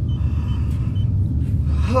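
A steady low rumbling drone from the radio drama's background sound bed, with a man's sigh at the very end.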